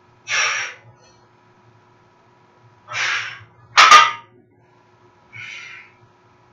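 A weightlifter's hard, forceful exhales at the end of a set of heavy overhead presses, in short half-second breaths. About four seconds in, the loaded barbell is set down with a loud metal clank, the loudest sound. A fainter breath follows near the end.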